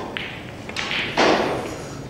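Snooker cue tip striking the cue ball, then a sharp click as it hits the pack of reds, followed about a second in by a louder, duller thump.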